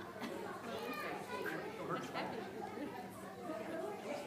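Congregation chatting, many overlapping voices with children among them, in a large reverberant room.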